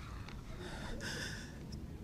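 A weeping woman's breathing, with one faint breath drawn in around the middle.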